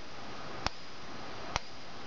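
Coil of a home-built capacitor-discharge magnetic pulser clicking with each pulse as the photo-flash capacitor bank is dumped into it. There are two sharp clicks about a second apart over a faint steady hiss.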